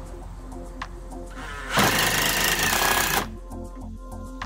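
Cordless drill running for about a second and a half, starting about a second and a half in, driving a screw into the wooden bench frame. Background music with a steady beat plays throughout.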